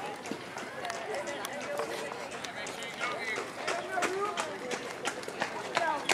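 Indistinct chatter of spectators' voices at an outdoor ball game, with scattered light clicks and knocks.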